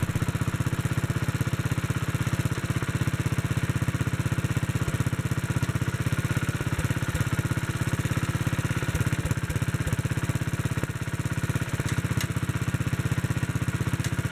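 Kohler K91 single-cylinder engine on a 1957 Wheel Horse RJ-35 garden tractor, running at a steady speed with an even firing beat.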